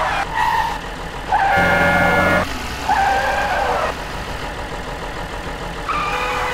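Cartoon truck engine sound effect, with three short held tones in the first four seconds, the middle one the loudest and fullest, then a steadier, quieter running hum.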